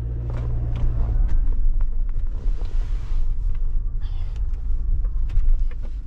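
Low, steady rumble of a car heard inside the cabin, with a hum in the first second. Scattered small clicks and knocks come from the camera being handled and propped in place.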